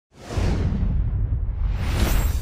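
Cinematic whoosh sound effect: a rushing hiss over a deep rumble that swells in at the start and surges again near the end.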